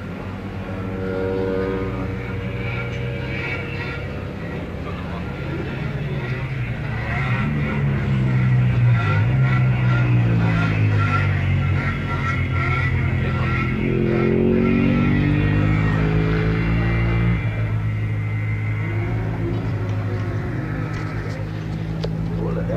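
Engines running and revving nearby, their pitch rising and falling several times, with more than one engine at different pitches. Loudest through the middle.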